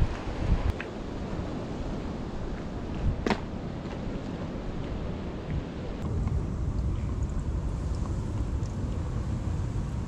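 Wind rumbling on the microphone, with a single sharp click about three seconds in. The sound turns duller about six seconds in.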